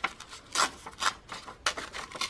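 A printed book page being torn slowly by hand, in several short rips.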